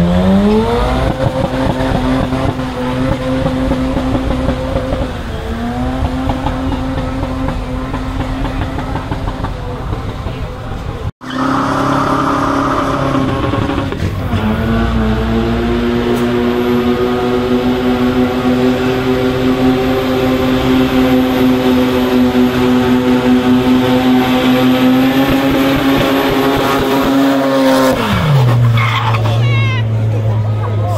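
Car engine held at high revs during a burnout, a steady drone with tyres spinning and squealing, broken by a brief dropout about eleven seconds in. Near the end the revs fall away suddenly to a low idle.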